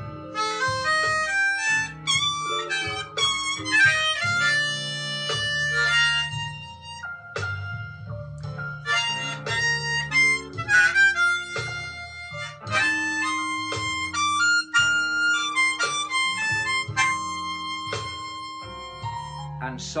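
B-flat diatonic harmonica played in second (cross) position: a run of quick, separate blues phrases, with a bass line holding long low notes underneath from a slow blues backing track in F.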